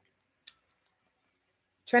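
A single short click about half a second in, followed by a couple of fainter ticks, in an otherwise very quiet room; a woman starts speaking right at the end.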